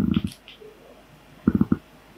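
Two short, low murmurs of a person's voice under the breath, one at the start and one about a second and a half in.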